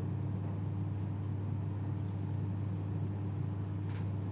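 A steady low hum, with a faint constant higher tone above it and no other sound.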